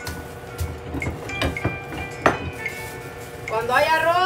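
Metal tortilla press clanking as its plate and lever are worked over a ball of corn masa: a few sharp knocks and clinks, the loudest a little past halfway. Faint background music runs underneath, and a voice comes in near the end.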